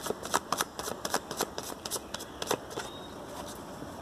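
A deck of tarot cards being shuffled by hand: quick clicking flicks of the cards against each other, thinning out in the last second or so.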